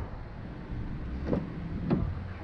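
Front door of a 2014 Hyundai Sonata (YF) being opened: two soft clicks of the handle and latch in the second half, over a steady low hum.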